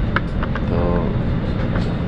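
Steady low rumble of an airliner cabin, with a short stretch of a voice about a second in and a few light clicks.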